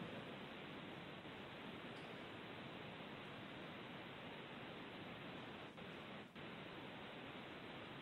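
Faint, steady hiss of the webcast audio feed with no voices, briefly dipping twice a little past the middle.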